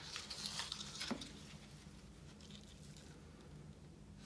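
Faint rustling and scratching of a burlap ribbon being unrolled from its spool and handled over paper, busiest in the first second or so, then quieter.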